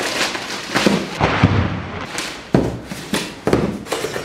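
Plastic courier mailer bag crinkling and tearing as a cardboard box is pulled out of it, with a series of sharp crackles and snaps.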